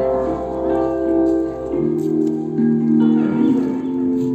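A live band playing an instrumental passage: a stage keyboard holds sustained chords over electric guitar and bass. The chord changes about two seconds in, where the low bass note drops out.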